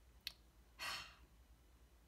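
A woman's short sigh, one breathy exhale about a second in, preceded by a faint click.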